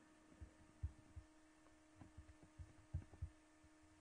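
Near silence: a faint steady hum with about eight short, irregular low thumps scattered through it.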